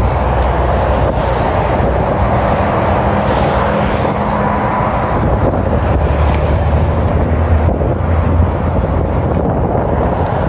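Car engine running steadily, with wind buffeting the microphone.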